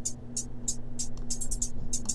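Programmed hi-hats from a beat playing back, run through a flanger effect: short ticks at an uneven pace with quick flurries between them.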